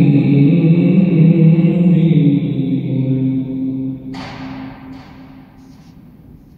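A man's voice reciting the Quran in melodic style (aşr-ı şerif) ends a phrase on a long, steady held note that fades out about four seconds in. A short rush of noise follows just after, then the voice dies away in the room's echo.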